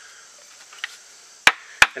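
Two sharp wooden knocks about a third of a second apart near the end, as freshly split pieces of wood and a maple wedge are handled and knocked against each other or the log.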